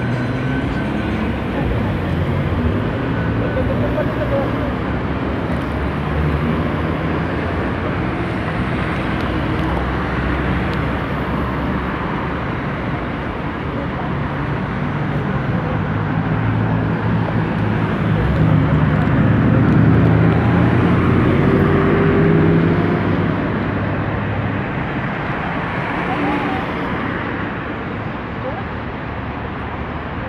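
Street traffic: car engines running and passing on a busy road, with one vehicle building louder and passing close about two-thirds of the way through.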